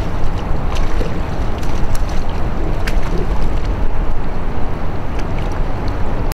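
Wind buffeting the microphone over open water: a steady low rumble, with scattered small ticks of water lapping.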